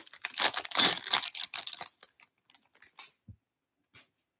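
Foil hockey card pack wrapper torn open and crinkled by hand, a dense crackle for about two seconds, then a few faint clicks and one soft tap as the cards come out.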